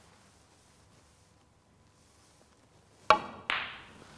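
Snooker shot: faint room tone, then about three seconds in the cue tip clicks against the cue ball, and a fraction of a second later the cue ball cracks into the red on a half-ball contact, with a short ring.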